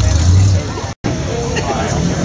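A mud-bog truck's engine running with a low, steady rumble under spectators' chatter, broken off by a sudden cut about halfway through; after it, voices go on over a fainter engine.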